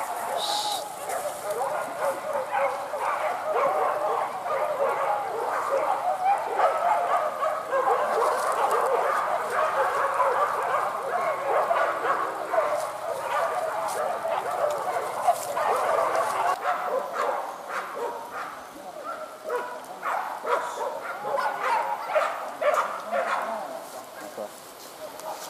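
A pack of boar-hunting dogs barking and yelping together, many dogs at once in a continuous overlapping din.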